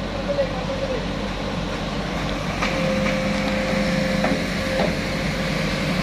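Truck-mounted crane on a flatbed truck running, its engine and hydraulics giving a steady hum that rises into a steady whine about two and a half seconds in as the hoist takes up a concrete mixer. A few light metal knocks from the hook and chain.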